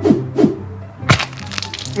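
A man laughing in short, sharp bursts: about three loud 'ha's roughly half a second apart, the last about a second in, over a faint steady low hum.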